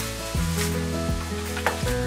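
Crinkling and rustling of a padded paper mailer envelope as its contents are pulled out, with a couple of sharp crackles near the end, over soft background music.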